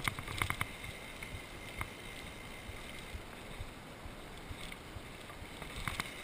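Mountain bike rolling fast down a gravel singletrack: a steady rush of tyres on gravel and wind, with a quick burst of rattling knocks in the first second and single knocks later as the bike jolts over bumps.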